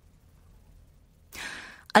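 Near silence, then an audible intake of breath by the audiobook narrator about a second and a half in, a soft half-second hiss just before she speaks again.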